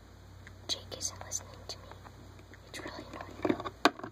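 Soft whispering, in short hissy bursts about a second in and again near the end, with a few sharp clicks and taps from plastic toy figures being handled on a hard floor.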